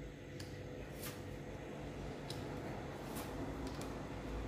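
Tarot cards being dealt one by one onto a wooden tabletop: a few faint, light ticks and slides of card on wood, over a low steady hum.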